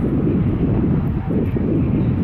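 A car's engine running loudly as the car sits staged at the drag-strip starting line: a deep rumble that swells and eases a little.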